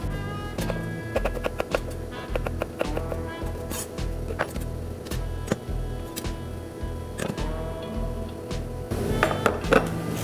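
Chef's knife tapping on a wooden cutting board in quick, irregular strokes as garlic cloves are thinly sliced, over background music with a steady beat.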